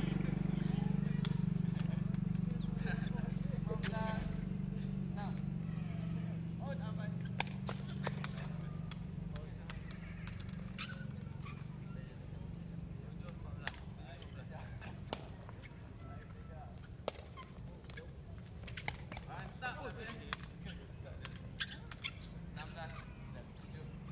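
Sharp smacks of a woven sepak takraw ball being kicked and struck in play, coming irregularly every second or so. A low drone fades away over the first several seconds.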